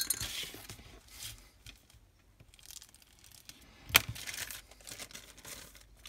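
Thin clear plastic bag rustling and crinkling as a sprue of plastic model-kit parts is drawn out of it, with one sharp click about four seconds in.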